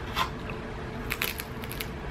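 A crispy tortilla chip from lobster nachos bitten and chewed up close: one crunch about a quarter second in as the bite goes in, then a quick run of sharp crackling crunches in the second half as it is chewed.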